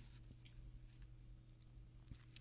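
Near silence: a faint steady low hum with a few soft clicks and light rustling as tarot cards are handled.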